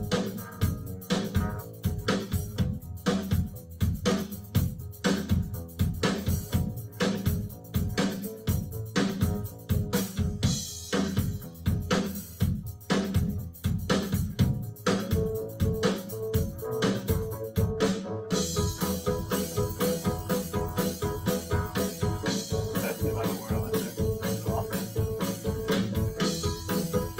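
A rock track being played back over studio monitors during mixing: a drum kit keeps a steady, busy beat with bass underneath. About halfway through, a held guitar-like tone joins the drums.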